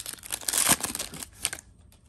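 Plastic-foil wrapper of a trading card pack crinkling as it is torn open and the cards are pulled out. The crackling dies away about a second and a half in.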